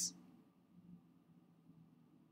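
Near silence: quiet room tone with a faint steady low hum.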